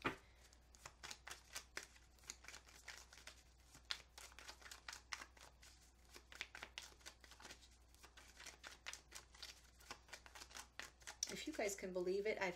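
A deck of tarot cards being shuffled by hand: a long, fast run of faint card clicks and flicks.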